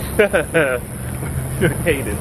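Steady high-pitched drone of night insects (crickets or cicadas), like tinnitus, under talking and laughing voices.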